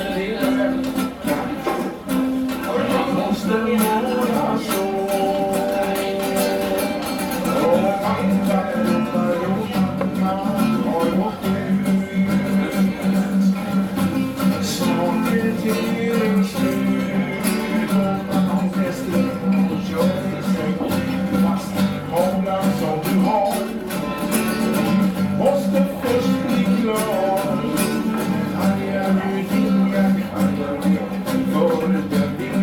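Acoustic guitar strummed in a steady rhythm, accompanying a man singing a song.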